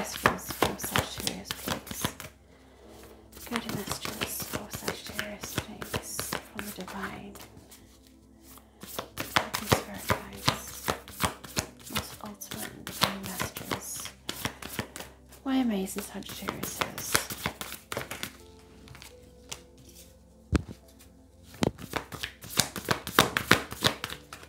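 A deck of tarot cards being shuffled by hand, hand over hand: quick runs of soft card slaps that stop and start again several times.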